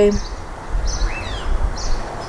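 A few short, high bird chirps, one sliding down in pitch about a second in, over a steady low outdoor rumble.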